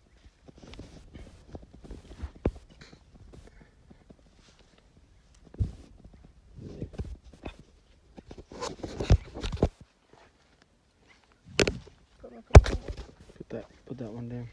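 Rustling and scuffing as a rope purse net is handled at a rabbit burrow, with footsteps on dry dirt and a few sharp knocks, the loudest near the end.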